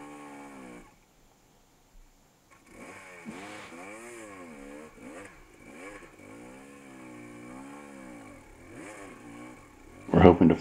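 Dirt bike engine cuts out about a second in, stalling on a sticky muddy downhill, then comes back a couple of seconds later and runs on with the revs rising and falling.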